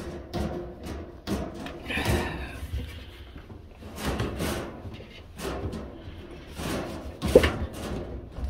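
Gloved hands handling a washing machine's small rubber drain hose against a pot on the floor: scattered knocks, bumps and scrapes, the sharpest one about seven seconds in.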